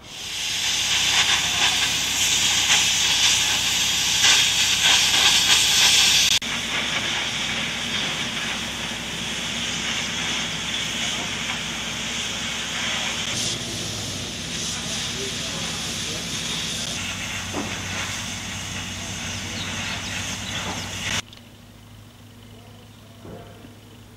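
A loud, steady hissing noise. It changes abruptly about six seconds in and cuts off suddenly shortly before the end.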